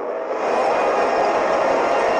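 Dense, heavily distorted effects-processed audio: a loud noisy wash with faint steady tones in it, growing louder and brighter about half a second in.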